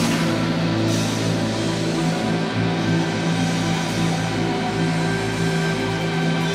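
Live rock band playing an instrumental passage. The drumming stops right at the start, leaving a sustained, droning chord held steady.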